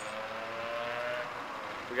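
A motor vehicle engine running nearby, a steady hum that rises slightly in pitch and fades out a little past halfway, over a low wash of traffic noise.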